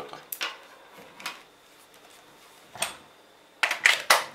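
Handling noises on a wooden workbench: a few separate sharp clicks of metal crocodile clips and a plastic cordless-drill battery pack being moved, then a louder cluster of knocks and clatters near the end as the pack and drill are handled.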